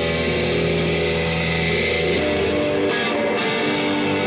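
Live rock band playing: electric guitar and bass guitar ring out in sustained notes over a held low bass note, which changes about two and a half seconds in.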